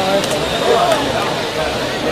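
Several indistinct voices calling out and talking at once: rugby players around a ruck, with spectators in the stands.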